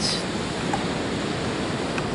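Steady rushing of sea surf washing onto a sandy beach.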